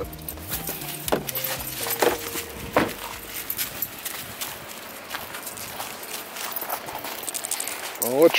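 Irregular footsteps and scuffs of a person and a leashed Siberian husky walking over dry fallen leaves and patchy snow, with scattered small clicks and handling knocks.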